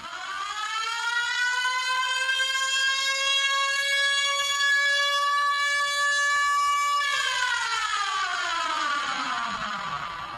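A single siren-like wail: one pitched tone that swells up in the first second, holds steady for about six seconds, then glides down in pitch over the last three seconds.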